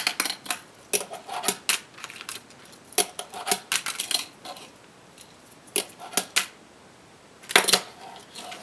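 A fingerboard clicking and clacking against a handboard deck and a wooden tabletop as fingerboard tricks are tried: sharp taps in several quick clusters with short pauses between, the loudest cluster near the end.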